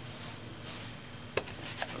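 Plastic spray bottle being handled: a couple of faint soft hisses, then two sharp clicks about half a second apart near the end.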